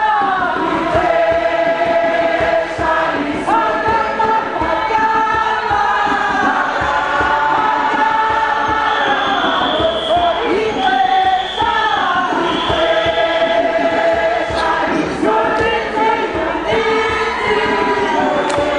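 A group of voices singing together in harmony, holding long notes that slide between pitches.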